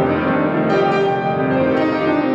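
Concert grand piano played solo in a classical piece: sustained chords ringing on, with new chords struck about two-thirds of a second and again near the end.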